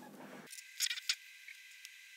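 Two short, sharp clicks about a third of a second apart, about a second in, over faint room tone.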